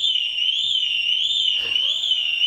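An electronic alarm going off: a loud, high warbling tone that sweeps up and down about twice a second.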